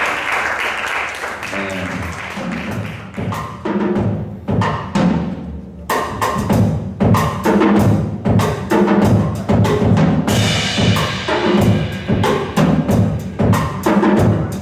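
Jazz drum kit played with sticks, drums and cymbals, starting loosely and settling into a steady beat about six seconds in. Applause fades out in the first couple of seconds.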